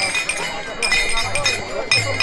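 Small brass hand cymbals (taal) clinking and ringing in repeated strikes, with crowd voices underneath.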